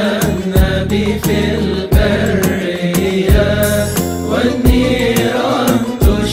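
Devotional hymn music: a chanted melody over a held low drone, with a steady beat about every two-thirds of a second.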